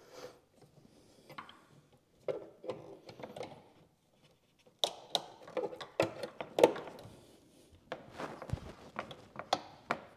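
Hand tools and hose clamps clicking and knocking against engine parts as pliers are worked on the heater hose clamps behind the valve cover. There are scattered light clicks and rustles, with the loudest knock about two-thirds of the way through.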